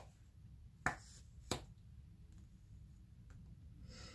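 Tarot cards being drawn from the deck and laid out: two sharp snaps about half a second apart near the start, then a faint click later.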